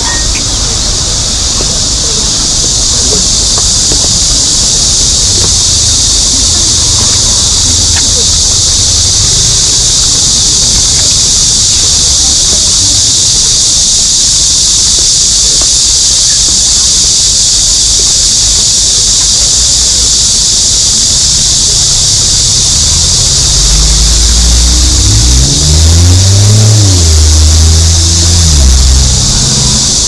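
A loud, steady, high-pitched buzzing chorus, typical of cicadas in street trees, over low street traffic noise. Near the end a motor vehicle's engine rises in pitch and holds as it passes close by.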